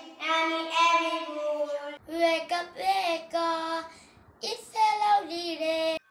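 A child singing a song in short held phrases, with a brief pause about four seconds in.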